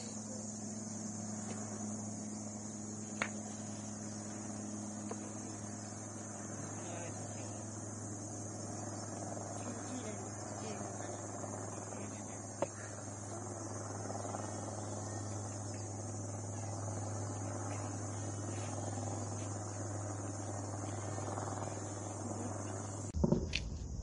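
Steady high chirring of insects in hillside forest over a steady low hum, broken by two sharp cracks about nine seconds apart.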